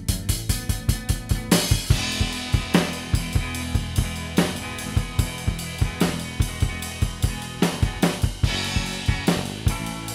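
Garage rock band playing: a drum kit drives a steady, fast beat of bass drum, snare and hi-hat, with several cymbal crashes, over held notes from the other instruments.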